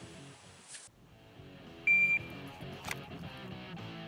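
Faint background guitar music, then an electronic shot timer's start beep about two seconds in: a single short, steady high tone that signals the shooter to begin firing. A sharp click follows about a second later.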